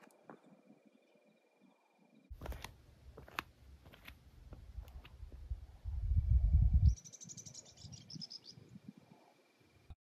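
Wind on the microphone as a low rumble, loudest for about a second near the middle and cutting off suddenly, with a few light clicks and scuffs. Just after it, a bird gives a quick run of high chirps.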